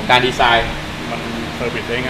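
Men talking briefly, in a short burst at the start and again near the end, over a steady background hum of room noise.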